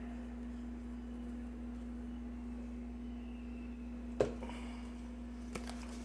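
Steady low electrical hum with one sharp click about four seconds in and a fainter click near the end.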